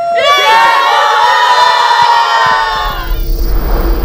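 A group of women cheering and whooping together, many high voices overlapping, dying away about three seconds in. It gives way to a rushing whoosh over a low drone as music starts.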